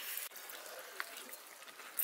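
Faint sound of curry and its gravy being ladled into a steel bowl, with a light dribbling and a small tap of the ladle about a second in and another at the end.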